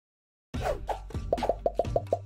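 Sound effects of an animated logo intro over music: half a second of silence, then falling swoops and a quick run of bright pops, about six or seven a second, as the icons pop into place.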